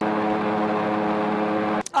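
A snowplane's propeller engine running at a steady pitch, cutting off abruptly near the end.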